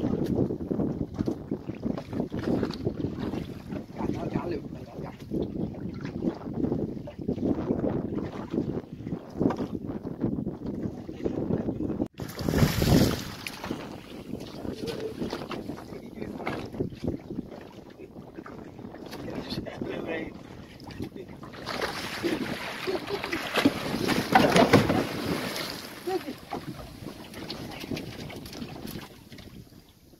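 Wind buffeting the microphone over water sloshing and splashing against a small open boat's hull. A louder rush of splashing comes about two-thirds of the way through, as a hooked fish thrashes at the surface beside the bow.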